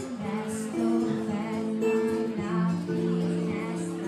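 A woman singing with long held notes, accompanying herself on acoustic guitar.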